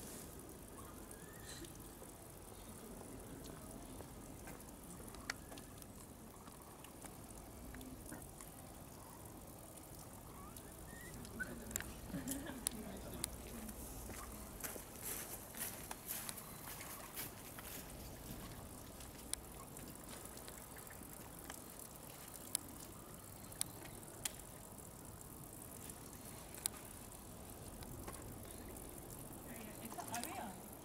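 Faint outdoor background: a low murmur of distant voices, with scattered sharp clicks, most of them in the middle.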